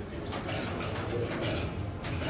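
Busy hall ambience: background music with a pulsing low end under a wash of crowd noise, with a few sharp clicks.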